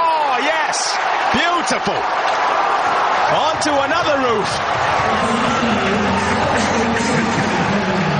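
Stadium crowd cheering a six, full of shouts and whistles that rise and fall in pitch. A steady low drone joins about five seconds in.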